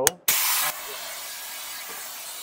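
Handheld shop vacuum switched on about a quarter second in, with a loud rush of suction for about half a second settling into a steady hiss, as it sucks up aluminium drill shavings from the wing structure.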